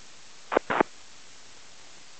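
Steady static hiss from an aviation VHF airband radio receiver between transmissions, broken a little over half a second in by two brief clipped bursts of transmitted audio, each about a tenth of a second long.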